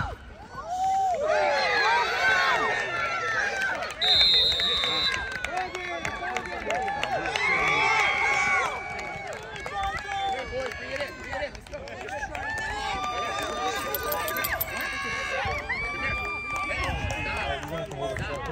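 Spectators and players shouting and cheering over one another during a youth flag football play. About four seconds in, a referee's whistle blows once, briefly and steadily.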